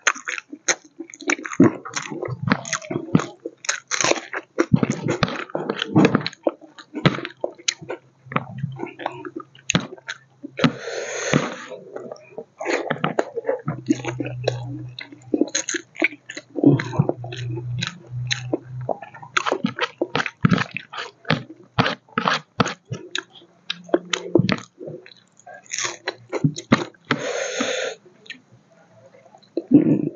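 Close-miked chewing and crunching of pork curry with rice eaten by hand, with many short wet clicks and smacks. Two longer sounds of about a second each stand out, one about eleven seconds in and one about twenty-seven seconds in.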